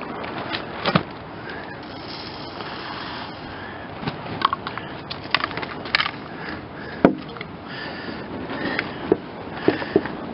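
Tomcat rat bait pellets poured from a cup into a white plastic pipe bait tube: a rattling patter with scattered clicks, and a sharp knock about seven seconds in.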